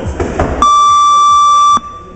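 One long electronic buzzer beep from a workout round timer, a steady pitch held for just over a second that starts and cuts off abruptly.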